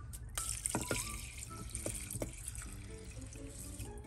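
Water poured from a plastic measuring cup into a rice cooker's inner pot over rice. It is a steady pour that starts about a third of a second in, with a few light knocks.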